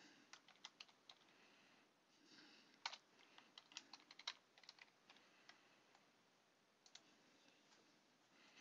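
Faint computer keyboard typing: short bursts of sharp keystroke clicks with brief pauses between them.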